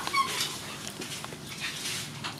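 A brief faint high whine just after the start, then light clinks of a spoon against a plate.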